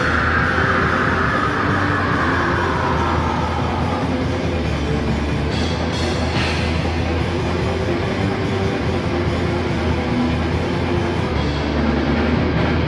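Heavy metal band playing live: distorted electric guitar over a drum kit, loud and dense. A held high note fades over the first few seconds, and cymbals crash about six seconds in.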